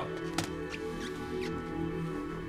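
Drama underscore of sustained, held chords, with a few short high clicks laid over it.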